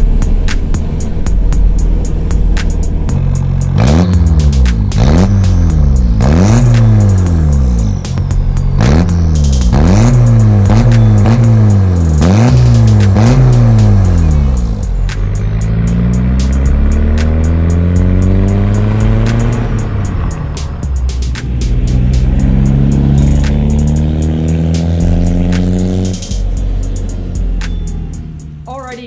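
Volkswagen MK1 Caddy pickup's diesel engine revved in a quick series of short blips, each rising and dropping back, then pulling up through the revs in longer, slower climbs. Background music with a steady beat plays over it.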